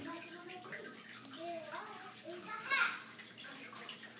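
Water sloshing faintly in a bathtub as a wet dog is rubbed down by hand, with a few soft pitched vocal sounds, one about a second and a half in and a brief rising one near three seconds.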